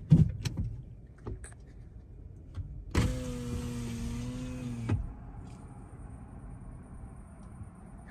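A car's electric window motor running for about two seconds with a steady hum that dips slightly near the end, over the low rumble of the car's idling engine. A few light clicks come before it.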